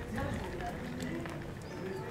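Voices of people nearby talking, unclear, with footsteps on stone paving.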